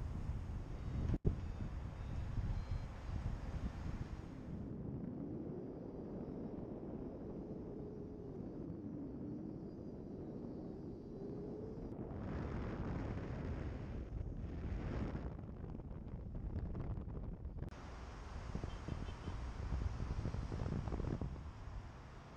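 Airflow buffeting a helmet camera's microphone during a paraglider flight, a steady low rumble of wind noise, with a sharp click about a second in.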